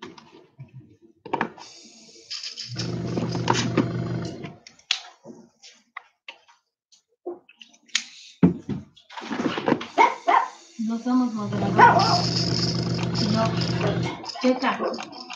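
Airbrush spraying with a steady hiss of air in two spells, one a couple of seconds in and one from about nine seconds in, with the low steady hum of an air compressor motor under each. Short voice-like sounds fall in the gap between them.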